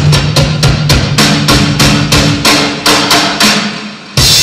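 Drum kit played live: an even run of drum strokes, about five a second, over a held low note, getting quieter just before the end.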